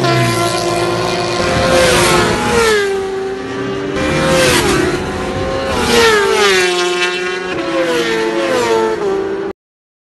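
Sport motorcycle engine running at high revs on a race track, its pitch repeatedly climbing and dropping. The sound cuts off suddenly near the end.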